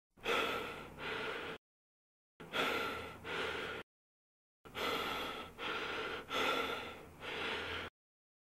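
A person breathing hard in gasps: three runs of sharp in-and-out breaths, with dead silence between them.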